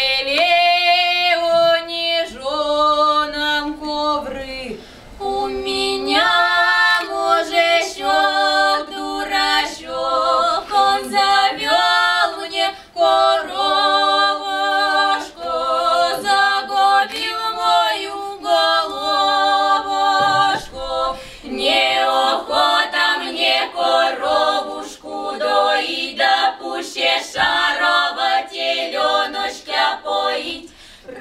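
Five women's voices singing a Ural humorous folk song a cappella in close harmony, in sung phrases with short breaks between them.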